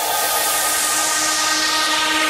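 Steady, even hiss with a faint steady hum of several tones underneath. There is no beat or speech.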